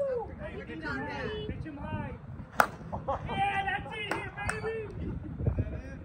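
A slowpitch softball bat (TruDOMN8) hitting a pitched softball: one sharp crack about two and a half seconds in, the loudest sound, with a fainter click about two seconds later. Men's voices talk faintly around it.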